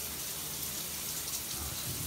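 Steady rushing hiss of running water, like a tap left running.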